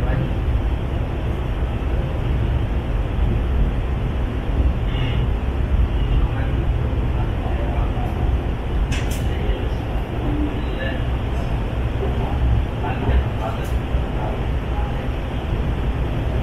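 Interior noise of a Hyundai Rotem metro train car running at speed: a steady low rumble of wheels on rail and running gear, with a couple of brief sharp clicks partway through.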